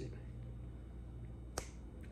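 A single short, sharp click about one and a half seconds into a pause, over a faint, steady low hum.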